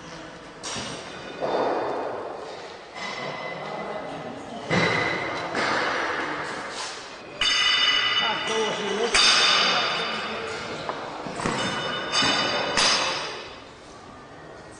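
Metal clanks of barbell plates in a weightlifting gym, a string of sharp knocks each leaving a high ringing tone, heard over background voices.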